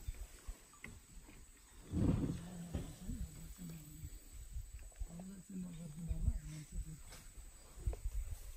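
A low-pitched voice making a run of short, held tones from about two seconds in until near the end, loudest at the start.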